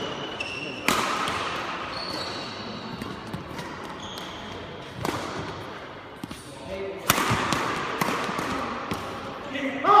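Badminton doubles rally: sharp racket strikes on the shuttlecock, about three strong ones, with short high squeaks of court shoes on the sports-hall floor between them. A man's voice cries out "oh" at the very end.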